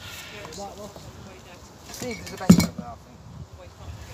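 Indistinct voices, with one sharp metallic clink, the loudest sound, about two and a half seconds in.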